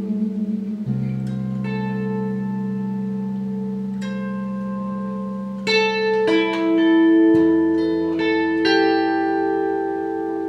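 Rancourt Baroco double-neck electric guitar, a custom guitar/bass/baritone/electric-harp instrument, played through an amplifier. Plucked melody notes ring on over held bass notes, and a new, lower bass note comes in about seven seconds in.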